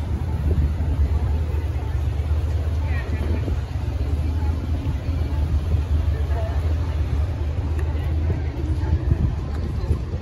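Busy city-street ambience heard while walking: a steady low rumble of traffic, with voices of passers-by.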